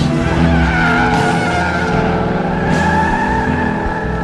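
Car tyres squealing in a sustained skid as a car spins on the spot in a smoky burnout, with its engine running underneath.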